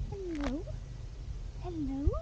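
A woman's voice making two drawn-out, sing-song calls that dip and then rise in pitch, one about half a second in and one near the end, over a low rumble.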